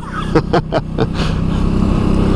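Can-Am Outlander 700 ATV engine running steadily while riding a gravel road, with a few short knocks in the first second.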